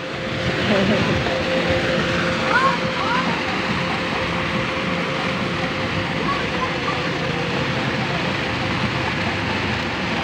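Steady outdoor background noise with a constant hum and a few brief, distant voices.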